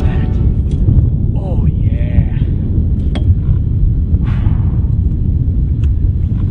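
Wind buffeting an outdoor camera microphone, an uneven low rumble throughout, with a brief faint voice about a second and a half in and a couple of light clicks.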